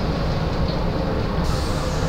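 Cabin noise inside a Volvo ALX400 double-decker bus on the move: a steady low engine and road rumble, with a brighter hiss joining about one and a half seconds in.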